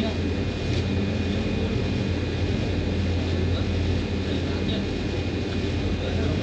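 Steady low mechanical hum with a faint constant high whine from wall-mounted air-conditioning units running.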